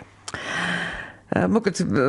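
A person's breathy sigh, about a second long, then speech resumes.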